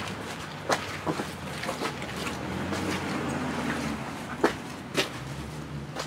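A few scattered footsteps and scuffs of rubber boots on wet dirt and concrete, each a short sharp sound at uneven gaps, over a steady low hum.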